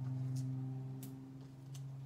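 Backing paper being peeled off foam adhesive dimensionals, making a few short crackles, with a steady low hum underneath.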